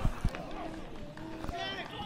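Spectators' voices and calls close to the pitch during a football match, with two sharp thumps at the very start and another about one and a half seconds in.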